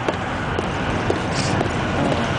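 Steady freeway traffic noise, a continuous low rumble.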